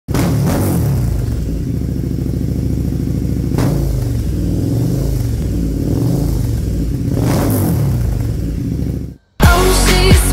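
KTM 1290 Super Duke R's V-twin engine running, its pitch rising and falling as it is revved in a few blips. It cuts off suddenly about nine seconds in.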